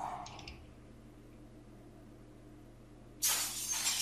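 Anime soundtrack sound effect: mostly quiet, then about three seconds in a sudden loud hissing, crashing burst that fades over about a second.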